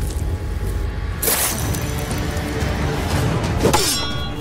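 Dramatic film soundtrack music, with a sudden sharp clashing hit about a second in and a second, shorter hit near the end.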